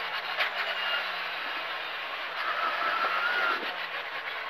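Cabin noise inside a Škoda rally car slowing hard for a tight right-hand bend: engine off the throttle with its note sinking, over a steady rumble of tyres and road, and a thin whine rising and falling in the second half.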